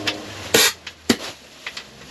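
Sharp metal clicks and knocks of a compressed-air hose coupling being pushed and twisted onto a pneumatic vacuum gun's fitting, which does not match. The loudest click comes about half a second in, another at about a second, with smaller ones after.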